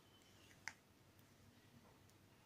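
Near silence: room tone, with one faint short click about two-thirds of a second in, from hands handling the paper doll cutouts.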